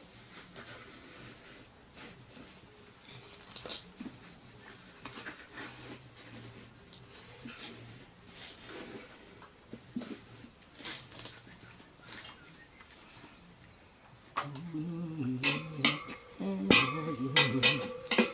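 Steel tyre levers clicking and clinking against the chrome spoked rim of a motorcycle front wheel as a hard, old tyre's bead is worked over it. Sparse light clicks at first, with sharper metallic clinks in the last few seconds.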